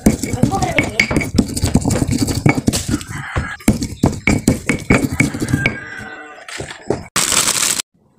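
Stone pestle grinding and knocking in a stone mortar (cobek), crushing chilies, shallots and garlic into a paste, with rapid irregular knocks and scrapes that thin out about six seconds in. A short burst of noise follows, and the sound cuts off near the end.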